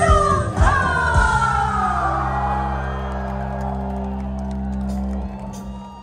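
Live band music at the close of a song: a low chord is held steady, with a long falling vocal cry over it in the first seconds. The music fades away about five seconds in.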